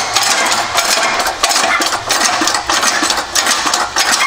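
Hydraulic shop press being worked to press a new bearing onto a Lada Niva rear axle shaft, a continuous mechanical clatter full of small clicks.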